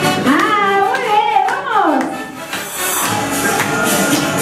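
Dance music playing loudly, with a swooping, gliding melody in the first two seconds. It dips briefly, then picks up again about three seconds in.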